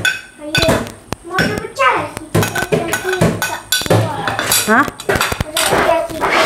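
A metal spoon scraping and clinking against a plate as chopped vegetables are pushed off it into a bowl: a run of short, irregular clicks and taps.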